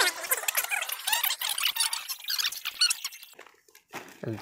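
Rapid, high-pitched squeaky chirps, many overlapping, fading away near the end.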